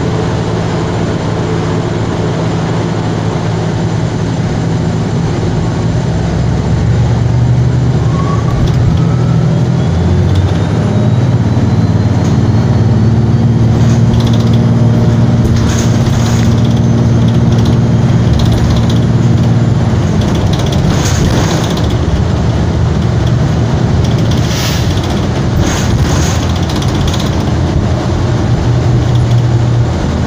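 Cabin noise of a Gillig BRT hybrid-electric transit bus under way: a steady low drivetrain hum and road noise that grows louder about six seconds in as the bus picks up speed, with a faint rising whine shortly after. Through the second half, the interior fittings rattle and click over the road.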